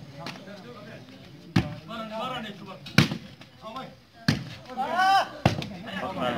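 A volleyball struck hard by players' hands during a rally: about five sharp slaps a second or so apart, the loudest about halfway through. Players and spectators shout between the hits, with one long call near the end.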